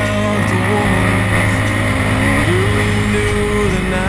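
Dirt bike engine running under changing throttle, its pitch rising and falling as the rider accelerates and backs off, then holding steady for about a second before dropping.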